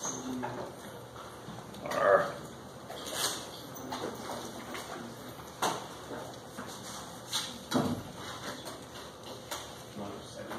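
Quiet classroom sounds: scattered light clicks and knocks, with one brief louder squeak or voice-like sound about two seconds in.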